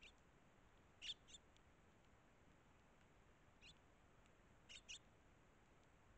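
Eurasian tree sparrows giving short, high chirps, about six in all and faint, with two quick pairs among them.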